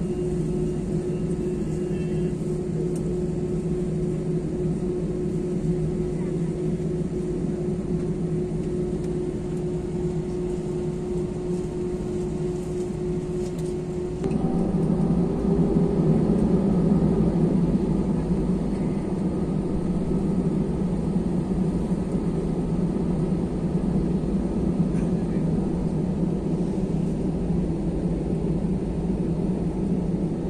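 Jet airliner engine and cabin noise heard from a window seat over the wing. A steady hum with a held tone changes abruptly about halfway through into a louder, rougher rumble, the higher engine thrust of the takeoff roll.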